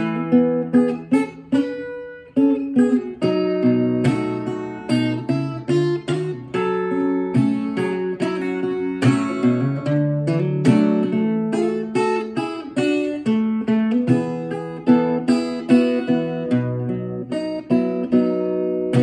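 Solo acoustic guitar playing strummed and picked chords in a steady rhythm, with a brief drop just after two seconds before the chords resume.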